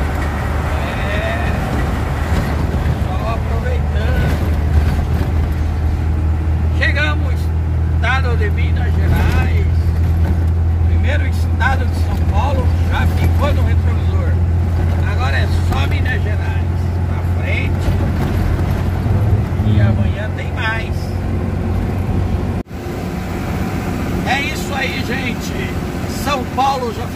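Mercedes-Benz 1218 truck's diesel engine droning steadily, heard from inside the cab while cruising, with faint voices over it. The sound cuts out for an instant near the end and comes back.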